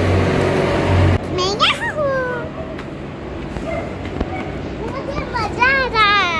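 A young girl's high-pitched voice calling out wordlessly twice, once with a rising then falling pitch about a second and a half in and again near the end, over street background noise. A low rumble fills the first second.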